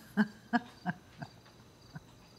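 Footsteps of hard-soled shoes on a floor at a brisk walking pace, about three steps a second, growing fainter as they go.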